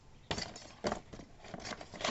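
Loose metal engine parts clinking and knocking as they are handled and moved around by hand: a few sharp clicks, the loudest about a quarter second and about a second in.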